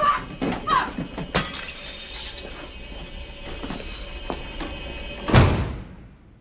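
Film soundtrack with music under a run of crashes and breaking sounds, like objects being smashed. The loudest crash comes near the end.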